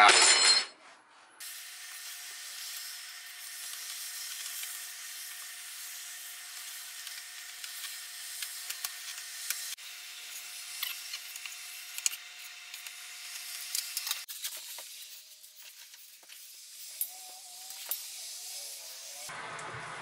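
Kitchen knife slicing raw venison on a plastic cutting board, with scattered light clicks and scrapes of the blade against the board over a steady hiss.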